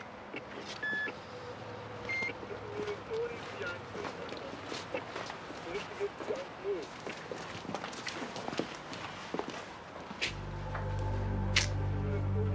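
Faint background voices with scattered small clicks and a few short beeps. Then film score music comes in with a low, held bass about ten seconds in.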